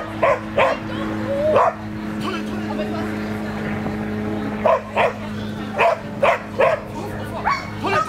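Dog barking in short, sharp barks while running an agility course: a pair near the start, then a quick run of about five in the second half. A steady low hum lies underneath.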